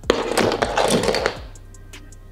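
A loud, scratchy rustle of hair being handled close to the microphone, starting suddenly and dying away after about a second and a half, over background music with a ticking beat.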